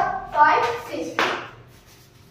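A voice in short utterances, then a single sharp hand clap about a second in.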